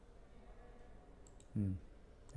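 Faint room tone with two quick, faint clicks about a second and a quarter in, followed by a short burst of a man's voice near the end.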